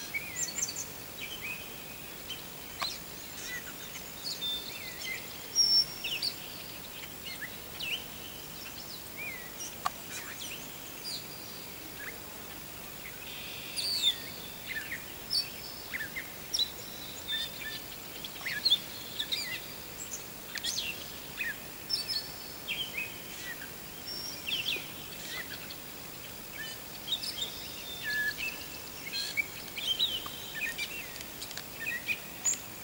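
Small birds chirping, many short high notes and quick falling calls scattered irregularly throughout, over a steady outdoor background hiss.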